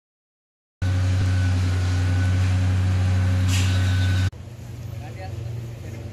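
A loud, steady machine hum with a low drone starts a moment in and cuts off abruptly about four seconds in. A quieter engine-like hum with faint voices follows.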